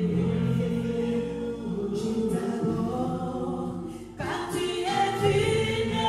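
A small gospel vocal group singing in harmony into microphones, male and female voices together, with a brief drop about four seconds in before the voices come back.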